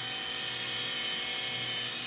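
Electric actuator motor whining steadily as it lifts the boat's engine-room floor hatch.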